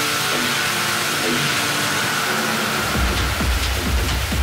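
Techno DJ mix in a breakdown: held synth tones and a hiss with no bass, then the kick drum and bass come back in about three seconds in.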